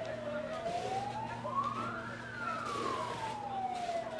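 Fire engine siren in a slow wail: the pitch climbs steadily for about two seconds, then falls back down over the next two, beginning to rise again at the end.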